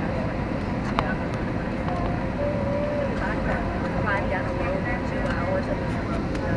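Steady engine and airflow noise inside the passenger cabin of an Airbus A321 on its descent to land, with a faint steady hum running through it. A sharp click sounds about a second in.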